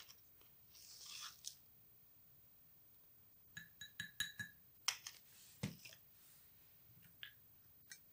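Faint handling of glassware while mixing a powder: a soft rustle of turmeric powder sliding in a tilted glass jar, then a quick run of light clinks with a short ringing as a plastic spoon taps against glass, followed by a few soft knocks.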